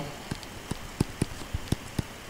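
Stylus tip tapping and clicking on a tablet screen while handwriting: about ten short, irregular clicks.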